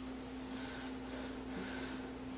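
Faint rubbing and scratching of fingertips pressing double-sided foam tape onto the back of a small plastic hour meter, a few soft strokes a second, over a steady low hum.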